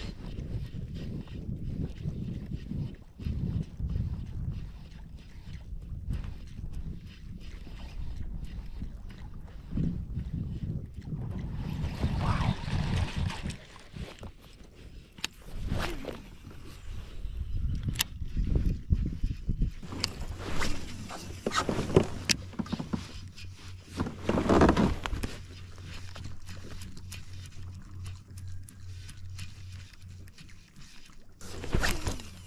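Lake water sloshing against a fishing kayak's hull, with scattered knocks and swishes from casting and reeling a fishing rod. A low steady hum comes in about two-thirds of the way through.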